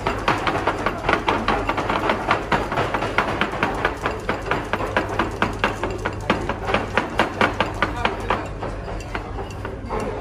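Chopsticks clacking rapidly against a ceramic bowl as a bowl of noodles is tossed and mixed, several quick clicks a second, thinning out near the end.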